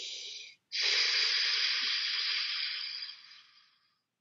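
A man breathing with effort: a short breath ends about half a second in, then after a brief pause comes one long, loud exhale of about three seconds that fades away.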